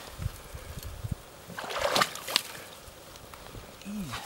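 Shallow stream water sloshing and splashing as someone wading in it reaches in to handle a beaver caught in a trap, with small knocks throughout and a louder splash about two seconds in.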